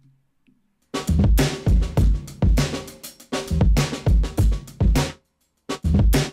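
Drum loop of kick, snare and hi-hat played through a noise gate (Ableton Live's Gate on a drum bus), set with a short hold and fast release. Each hit is cut off sharply, leaving silence between the strokes. The loop starts about a second in, breaks off briefly near the end and starts again.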